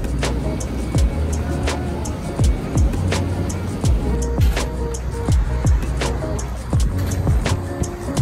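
Lo-fi hip-hop background music with a steady beat: kick drum, hi-hats and a sustained bass line under soft chords.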